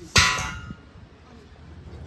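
A single loud metallic clang that rings out and fades over about half a second.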